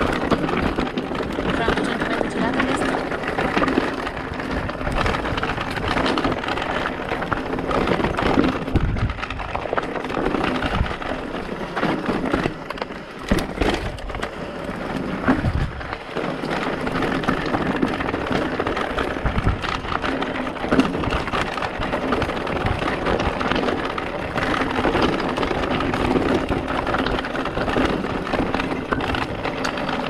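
Electric mountain bike ridden down a rocky dirt trail, picked up by a handlebar-mounted camera: continuous crunch of tyres on loose stones and soil, with many short knocks and rattles from the bike as it runs over rocks and bumps.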